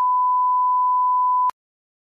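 Censor bleep: a steady single-pitch tone edited over speech to blank out what is said, cutting off abruptly about one and a half seconds in.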